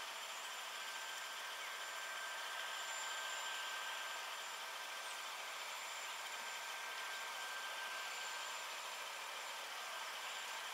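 Steady faint hiss of outdoor background noise, with a thin, high, steady whine running through it.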